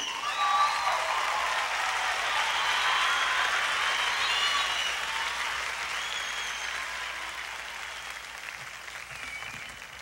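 Concert audience applauding and cheering after a band member is introduced, with a few shouts over the clapping, dying away gradually toward the end.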